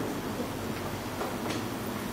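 Steady room noise in a pause between speech: an even hiss with a faint low hum, and a couple of faint soft ticks.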